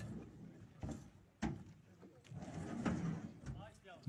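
Furniture being loaded onto a truck bed: a few separate knocks and thumps of wood and metal being pushed and set down, with faint voices in between.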